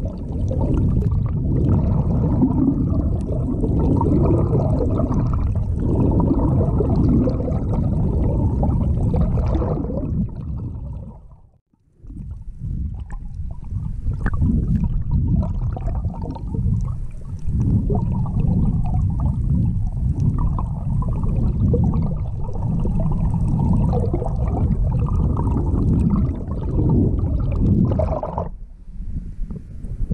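Muffled underwater rushing and gurgling of the sea heard through a submerged camera, dull with little treble. It fades out for about a second near the middle, then comes back, and thins out again just before the end.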